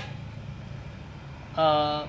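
A faint, steady low background hum, then a man's drawn-out hesitant "uh" starting about a second and a half in.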